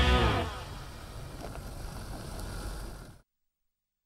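Rock music ending about half a second in, followed by a Jeep Renegade Trailhawk driving on a gravel track: a quieter, steady noise of engine and tyres. It cuts off suddenly a little after three seconds.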